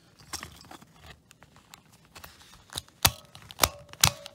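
Small plastic clicks and handling rustles as the motor unit of a Zhu Zhu Pet toy is pressed back onto its plastic body, ending in a few sharp, loud clicks in the last second as the parts seat.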